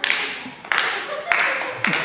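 Rhythmic handclapping: four sharp claps, evenly spaced about two-thirds of a second apart, each dying away briefly.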